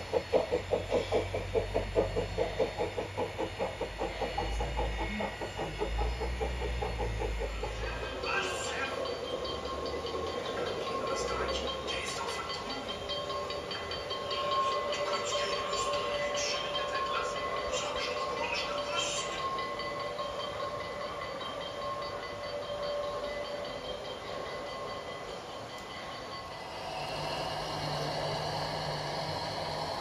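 G-scale model trains running on a garden railway. The first few seconds hold a fast, regular chuffing from a narrow-gauge steam locomotive's sound system, with a low rumble. Then come steadier running with scattered rail clicks, and near the end a steady hum.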